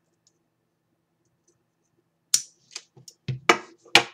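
About two seconds of near silence with a faint hum, then a quick run of five or six sharp clicks and knocks from craft tools and trim being handled.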